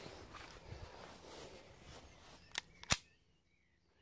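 Two sharp clicks from a handled CO2 blowback Luger P08 airsoft pistol, about a third of a second apart, the second louder, over a faint hiss. The sound then cuts off suddenly.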